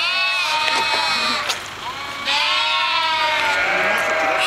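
Sheep, a ewe and her lambs, bleating back and forth: two long, high bleats, the second starting a little after two seconds in.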